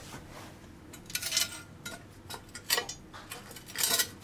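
A few short, sharp clinks and knocks of hard objects being handled, about four scattered hits with the loudest near the end.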